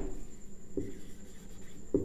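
Whiteboard marker writing on a whiteboard: faint strokes as a number and the start of a word are written.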